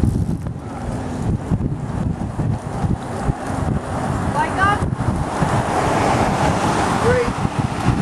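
Wind buffeting the microphone of a camera on a moving bicycle: a loud, continuous rumble with no break.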